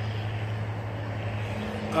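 A steady low background hum over a faint even hiss of outdoor noise. A man's drawn-out hesitant "uh" begins near the end.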